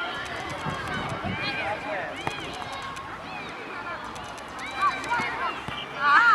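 High-pitched voices of young female players shouting and calling out briefly during a five-a-side football game, over the patter of running feet on the pitch.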